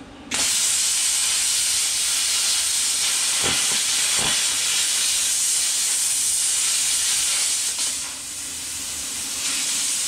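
Plasma cutter starting its arc about a third of a second in and cutting through a steel bracket on a rear axle housing: a loud, steady hiss of air and arc. Two short pops come around the middle, and the hiss dips briefly near the end before coming back up.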